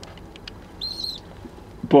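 A bird's single high chirp about a second in, lasting under half a second.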